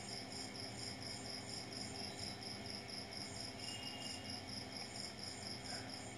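Faint, steady insect chirping: a high-pitched pulse repeating about four times a second, over low room hiss.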